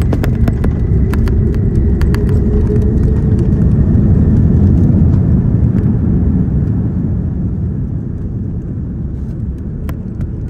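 Airliner landing roll heard from inside the cabin: a loud, deep rumble of engines and wheels on the runway, loudest about four to five seconds in, then easing off as the aircraft slows. Scattered sharp rattles and clicks from the cabin throughout.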